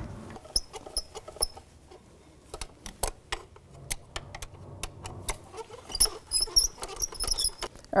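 Light metallic clicks and taps, scattered and busier near the end, as a hand tool works the mounting bolts of a new oil filter housing into a Chrysler 3.6 engine to start their threads.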